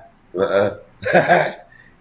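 A man's voice making two short wordless vocal sounds, each about half a second long, with a brief gap between them.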